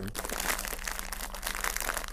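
Small foil snack bag of Takis crinkling as hands work inside it: a dense, continuous run of crackles.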